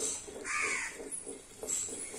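A crow caws once: a short, arched call about half a second in.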